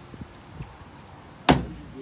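A single sharp knock on a metal jon boat about one and a half seconds in, with a brief low ring after it, as the boat is poled through shallow water.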